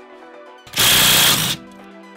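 Cordless impact wrench hammering in one short burst of just under a second, about two-thirds of a second in, spinning the flywheel nut off the crankshaft of a Kawasaki KX250 engine.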